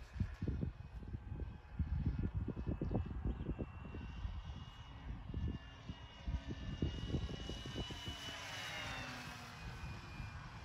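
High whine of an RC airplane's 2216 brushless electric motor on 4S swinging a 10x7 propeller, flying overhead; the whine swells and then drops in pitch as the plane passes near the end. Wind buffets the microphone in irregular gusts throughout.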